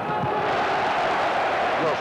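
Basketball arena crowd cheering and shouting, a steady dense wash of many voices.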